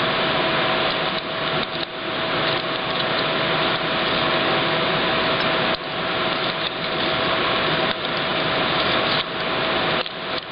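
Steady mechanical noise with a constant mid-pitched hum, dipping briefly a few times.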